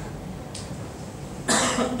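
A single short cough into a handheld microphone about one and a half seconds in, over a low steady hum from the microphone and room.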